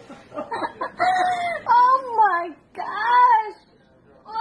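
A 4-month-old baby fussing: two drawn-out, high-pitched, wavering whines, about a second in and again near three seconds.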